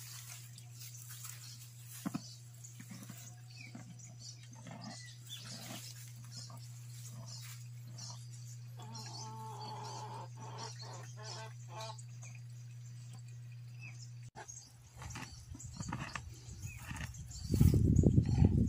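A horse being hand-fed over a fence. Mostly faint scattered sounds over a low steady hum, then a louder burst of breathy noise close to the microphone near the end.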